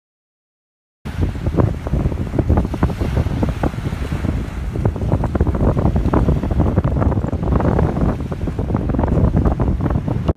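Wind buffeting the microphone loudly, with waves breaking on the shore beneath it; it starts suddenly about a second in.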